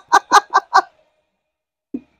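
Laughter: a rapid run of 'ha' pulses, about five a second, that stops under a second in, followed by silence.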